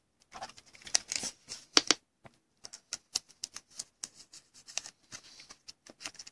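A sleeved trading card being slid into a rigid plastic toploader: an irregular run of small plastic clicks and scrapes, the loudest about one and two seconds in.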